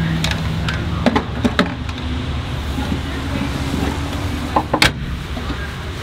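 Bank drive-through pneumatic tube system blowing, a steady rushing hum that starts suddenly, with a few sharp clunks of the plastic carrier, the loudest near the end.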